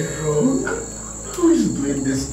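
A man crying aloud, sobbing and moaning in a wavering voice that slides up and down, loudest about a second and a half in, over a steady high-pitched tone.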